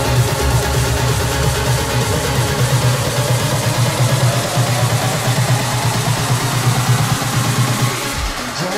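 Electronic dance music from a live DJ set, playing loud and continuous over a festival sound system. The deepest bass drops out about three seconds in, leaving the upper bass and the rest of the track running.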